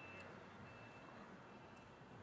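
Forklift reversing alarm beeping faintly: a few high, steady beeps, switching on and off under low street noise.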